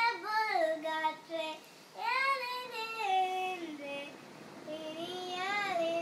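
A young girl singing a Tamil song with no accompaniment, in three held, gliding phrases with short breaths between them.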